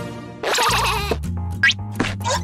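Cartoon soundtrack: light background music, with a wavering, warbling character sound about half a second in and a quick rising whistle-like effect near the end.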